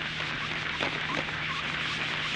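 Crumpled newspaper wiped lightly over the glass of a solar panel, a soft dry rustling rub, over a steady low hum.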